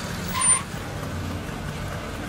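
Street traffic: a steady rumble of engines, with a brief high-pitched tone about half a second in, the loudest moment.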